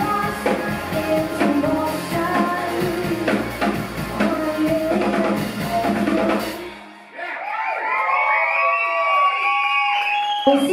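Live rock band, a Yamaha drum kit driving the beat under a woman's lead vocal, ending abruptly about seven seconds in. The audience then cheers and whoops.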